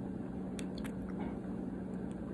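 A quiet pause in the room: a steady low hum with a few faint short clicks about half a second to a second in.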